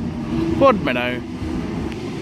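An Oscar H-set electric train pulling out, a steady low electric hum, with a man's voice briefly naming a station in the middle.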